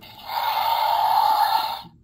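Battle Chompin Carnotaurus toy's electronic dinosaur roar played through its small built-in speaker: a raspy, hissy roar lasting about a second and a half with no deep low end. It is set off by tapping the figure's damage patches quickly several times.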